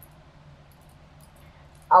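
Faint, even rubbing as fingers wipe paint blobs off the edge of a gel printing plate, over a steady hum; a voice starts right at the end.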